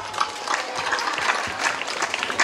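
Crowd applause: many scattered, irregular hand claps from the assembled students.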